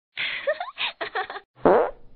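A short intro sound effect: a string of brief buzzy sounds with sliding pitch, the last and loudest one about one and a half seconds in.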